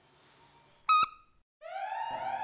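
A single short, high whistle-like beep about a second in, then an alarm siren starting up with a rising sweep near the end: the security alarm going off as a trap is set off.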